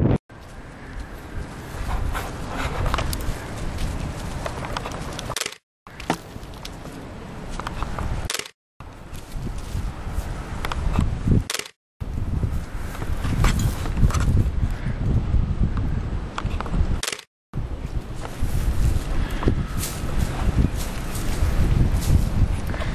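Wind on a helmet camera's microphone with the rolling noise of a bicycle on a dirt trail, heavy in the low end. It is broken into several short stretches by sudden cuts to silence, about five times.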